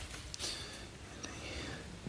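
Quiet room tone with faint whispering.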